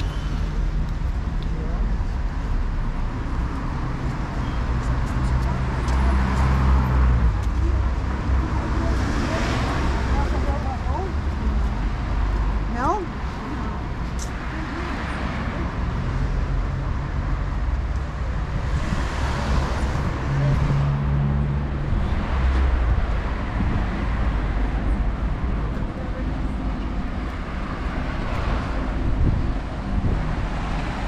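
City street traffic: a steady low rumble of car engines and tyres, with cars passing by that swell and fade several times.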